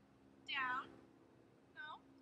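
Two short, high animal cries, each falling in pitch, the first about half a second in and the second near the end.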